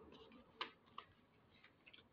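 A few faint, sharp clicks: two about half a second apart early on, then a fainter one near the end, from a shiny metallic plastic hair bow being handled and turned over in the hands.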